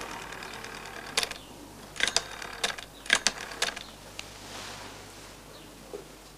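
A rotary-dial telephone being dialled, digit after digit. Each digit is a scrape of the finger dial being wound round, then a quick run of clicks as it springs back, at a group every half second to a second for about four seconds.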